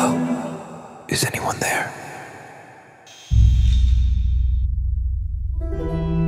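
Film score with sound design. A held chord fades out, a short noisy burst comes about a second in, then a deep low rumble starts suddenly about three seconds in, and pitched chords return near the end.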